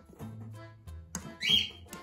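A cockatiel gives one short, loud, shrill call about a second and a half in, over background music with a low bass line.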